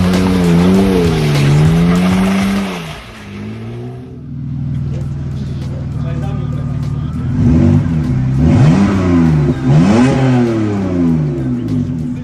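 BMW E39 engine revving up and down as the car slides. After a short dip, the same model's engine runs steadily for a few seconds, then is blipped several times in quick rises and falls of pitch.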